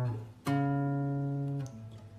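Acoustic guitar playing the opening of a song, with no voice yet. A ringing chord dies away, a new chord is struck about half a second in, and it rings steadily before fading near the end.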